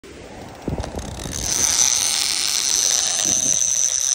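Drag of a large conventional big-game fishing reel screaming as a hooked fish peels line off it: a steady high whine that builds in over the first second and a half. A few handling knocks come just before the whine.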